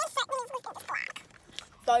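A girl's voice talking in quick bursts for about a second, then a short pause and another voiced syllable near the end.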